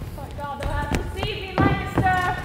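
Women's voices over about three heavy thuds on a wooden stage floor, the loudest about one and a half seconds in.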